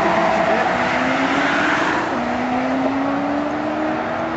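Engine accelerating hard at highway speed: its note climbs steadily, drops abruptly at a gear change about two seconds in, then climbs again, over a steady rush of road and wind noise.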